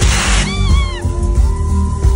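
Live pop band playing loudly through a festival PA: a short crash at the start, then a high voice sliding up and down in pitch and holding one long note over drums and bass.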